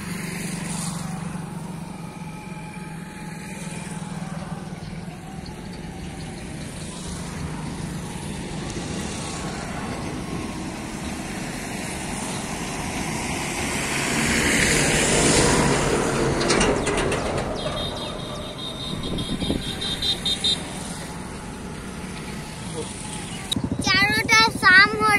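Road traffic passing by: a vehicle goes past, getting louder to a peak a little past halfway and then fading. A rapid high-pitched pulsing sounds for about three seconds soon after.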